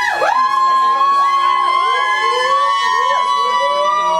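Long, high wailing tones. One holds steady throughout while others swoop up and down beneath it.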